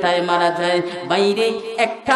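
A man's voice chanting sermon lines in a sung, drawn-out melody through a microphone, holding each note for up to about a second before breaking to the next.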